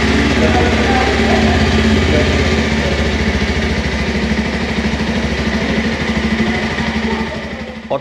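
Bajaj Pulsar 125's air-cooled single-cylinder four-stroke engine idling steadily, fading out near the end.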